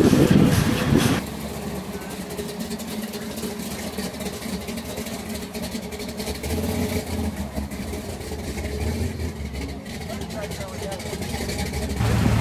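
A car engine running at low speed or idling, with people talking in the background; a louder passage cuts off abruptly about a second in.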